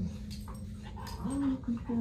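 A dog scratching itself with a hind leg, then a short, high-pitched dog whine about a second and a half in.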